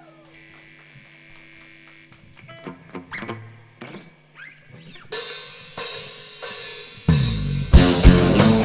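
Quiet electric guitar and bass notes over steady amplifier hum. About five seconds in come four evenly spaced cymbal strikes, then the full rock band, drums, electric guitars and bass, comes in loud about a second before the end.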